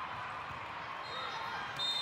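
Volleyball rally in a large, echoing hall: the ball being hit over the steady din of spectators and neighbouring courts, with faint shouts. Near the end a short referee's whistle blows the rally dead.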